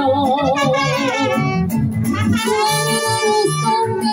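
Mariachi band playing an instrumental passage: trumpets carry the melody in held notes with vibrato over a steady strummed-guitar and guitarrón rhythm.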